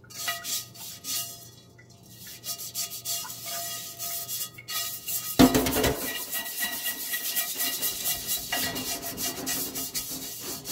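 Stiff-bristled dish brush scrubbing the inside of a wet cast iron skillet in a metal sink: quick scratchy back-and-forth strokes. The scrubbing gets louder and fuller from about halfway through.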